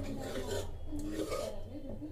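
A utensil scraping and rubbing against a cooking pot in a few irregular strokes as the watery saag is stirred and mashed.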